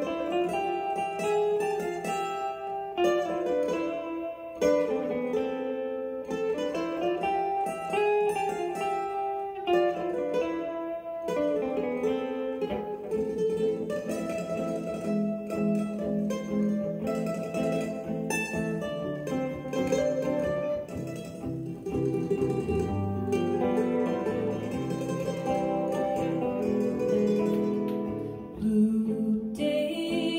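A mandolin and a hollow-body archtop electric guitar playing an instrumental passage together: a moving, picked melody line over chords.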